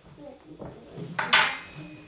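Metal utensil clattering against dishes: soft handling noises, then one sharp clatter a little over a second in that rings on briefly.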